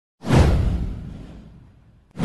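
Produced whoosh sound effect for an animated intro: a sudden swoosh with a deep low end that sweeps downward and fades out over about a second and a half.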